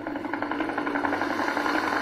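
Helicopter rotor chopping in a rapid, steady beat that grows louder, over a low sustained musical drone.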